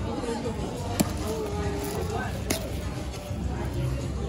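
Paper-lined cardboard food box being pulled open and handled, with two sharp clicks, one about a second in and one about halfway through, over background music and voices.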